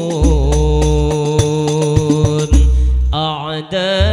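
Hadrah Al-Banjari ensemble: a male lead vocalist sings sholawat through a microphone with long held notes, over terbang frame drums and a deep bass drum. The drums drop out briefly about three seconds in, leaving the voice alone with a wavering line, then come back in.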